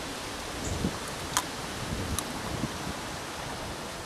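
Steady outdoor background hiss with two faint sharp clicks about a second and a half and two seconds in, as a fresh pea pod is split open by hand.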